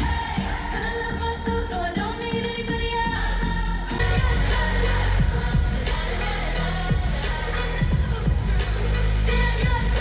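Live pop music played loud through a concert sound system: a woman singing over a band with heavy bass, heard from the audience seats. The music gets fuller and louder about four seconds in.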